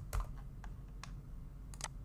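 Computer keyboard typing: about half a dozen scattered keystrokes, with short gaps between them, over a faint low hum.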